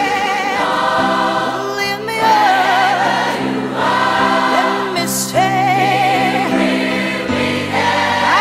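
Gospel choir singing over an instrumental accompaniment, with long held, wavering notes over sustained chords that change every second or two.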